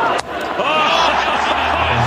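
A single sharp crack of a cricket bat striking the ball about a quarter second in, followed by excited overlapping voices.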